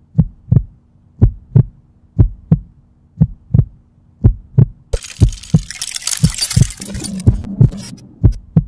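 Heartbeat sound effect: paired low thumps, one pair about every second. About five seconds in, a burst of crackling static joins it as a glitch effect.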